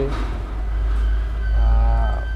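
Steady low rumble of road traffic, growing louder in the second half, with a thin high whine coming in about halfway through.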